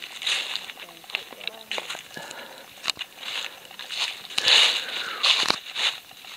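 Irregular rustling and crunching with sharp clicks: footsteps through grass and leaves and handling noise from the camera, loudest about two-thirds of the way in.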